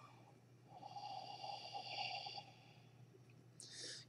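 A man blowing one long, steady breath of about two seconds onto a small sensor board held at his lips, followed by a short breath in just before the end.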